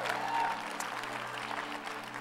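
Congregation applauding at an even, moderate level over a sustained keyboard chord held underneath.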